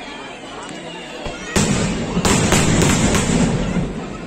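Aerial firework shells bursting overhead: a sudden loud bang about a second and a half in, followed within two seconds by a quick run of four or five more bangs with crackling between them.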